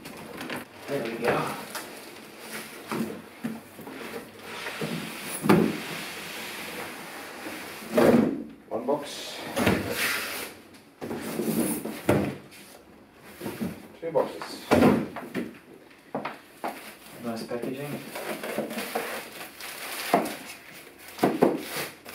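Cardboard box and polystyrene packing being handled while unpacking a floorstanding speaker: the long box slides, scrapes and is set upright. There are several loud knocks spread through.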